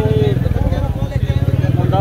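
A man's voice speaking over the steady low rumble of an engine running throughout.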